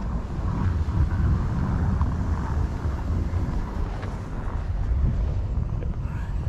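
Low, steady rumble of a Jeep Grand Cherokee's engine working through deep snow, mixed with wind buffeting the microphone.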